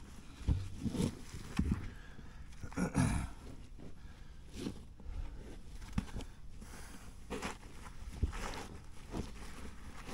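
A large rock being shifted by hand in a dirt trench and a lifting sling wrapped around it: irregular scuffs, scrapes and thumps of stone and soil, with short effortful grunts, the heaviest about three seconds in.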